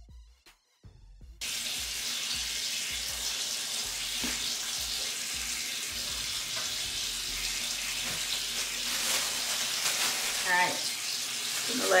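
Water running steadily from a bathroom tap, starting abruptly about a second and a half in.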